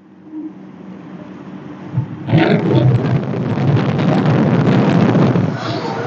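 Fishing boat getting underway: a low engine hum, then about two seconds in a loud rush of engine, water and wind as the boat speeds up, easing slightly near the end.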